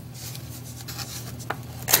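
Black construction paper being folded and handled, a soft rubbing of paper, with one sharp click about one and a half seconds in, over a steady low hum.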